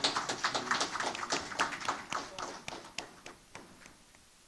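A small audience applauding, many hands clapping at once, thinning out and dying away near the end.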